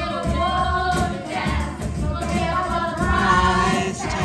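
A group of voices singing together into microphones over a karaoke backing track with a steady bass line, played through PA speakers.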